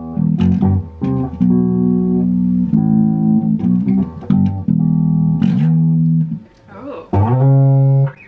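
Electric guitar playing a slow riff of held single notes, picked one at a time after a four-count, with a short break about six and a half seconds in before the next note.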